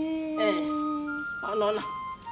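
Background film score of held synthesizer notes, one low note for about a second, then higher notes, with a voice speaking briefly over it twice.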